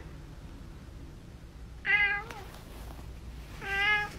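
Domestic cat meowing twice, in answer to being coaxed: one short meow about two seconds in and another near the end, each with a slight downward bend in pitch.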